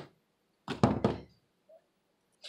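A couple of dull, bass-heavy thumps in quick succession about three-quarters of a second in, as a hand accidentally knocks into the camera, picked up as handling bumps on its own microphone.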